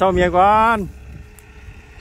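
A man's voice calling out a drawn-out, sing-song phrase that ends about a second in, over a low steady rumble; the same call starts again right at the end.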